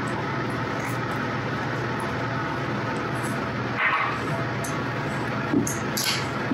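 Steady background noise, like a fan or air handling, with one short sound about four seconds in.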